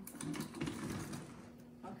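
Rapid, irregular clicking and crackling over a steady low hum.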